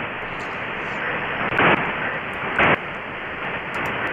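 Demodulated audio from a software-defined radio receiver (HackRF in CubicSDR): steady static hiss, broken twice by short loud bursts of noise about a second apart.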